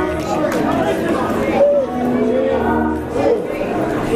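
A congregation's many overlapping voices calling out and singing in worship over held music.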